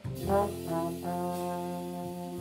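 Trombone playing a jazz line over guitar and upright bass: a few quick, bending notes, then one long held note from about a second in.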